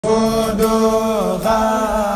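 A man's voice chanting a xassida, a Senegalese Sufi devotional poem, in long held notes. About a second in, the pitch slides down, then steps back up.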